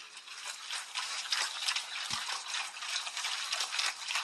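Pigs eating feed scattered on a concrete floor: a dense, steady crackle of chewing and crunching, with a short low thump about two seconds in.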